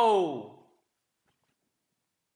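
A man's voice trailing off in a drawn-out "so" that falls steadily in pitch like a sigh, fading out well before a second in.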